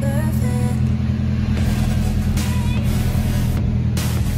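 Background music over a steady low hum.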